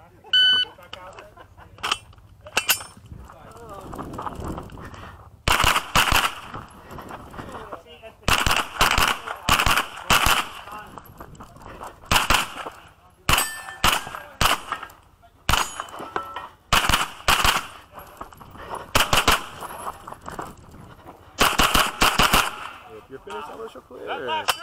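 A shot timer beeps once, right at the start. Then a custom pistol-caliber carbine from DaVinci Manufacturing fires in quick strings of shots, broken by short pauses.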